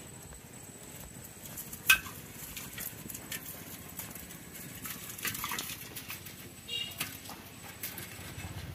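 Bamboo fish trap knocking and rattling against the rim of a metal pot as shrimp and small fish are shaken out of it, with water dripping. Scattered light knocks, and one sharp knock about two seconds in is the loudest.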